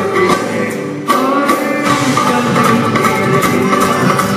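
Live band playing a Bollywood song, with keyboards, guitar and percussion under a melody line; the music eases briefly and comes back in strongly about a second in.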